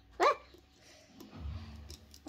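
A child's short, high-pitched "ah!" yelp, rising then falling in pitch. A quieter low rumble follows in the second half.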